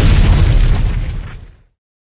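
Explosion-style sound effect for a logo reveal: a loud, deep blast with hiss that fades away over about a second and a half, leaving dead silence.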